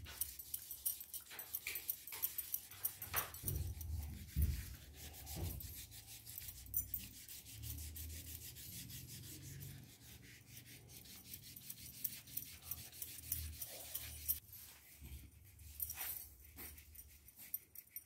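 Hands rubbing and scratching over a sheet of drawing paper on a clipboard, in many short strokes, with soft low thumps from the paper and board being handled.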